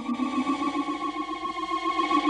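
Synthesizer music: one sustained, steady chord with a fast, even flutter.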